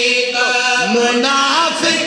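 A man's voice chanting a devotional verse in a melodic, singing style, with long held notes that slide up and down in pitch.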